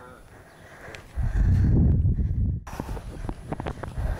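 A loud low rumble starting about a second in and lasting about a second and a half, followed by a run of light footsteps on concrete.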